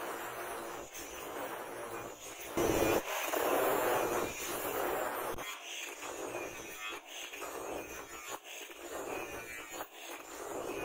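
Handheld angle grinder with a flap disc grinding a steel knife blade. The sound wavers as the disc is pressed and moved along the blade, with a brief louder surge about three seconds in.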